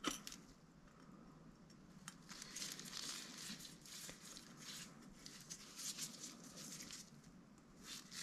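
A light click at the start, then faint, irregular rustling and scrubbing as a naphtha-wetted cleaning swab is worked into the hinge tube of a saxophone key to clear old grease and grime.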